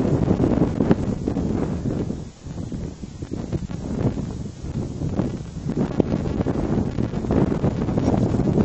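Wind buffeting the microphone: a loud, uneven low rumble that eases briefly about two and a half seconds in.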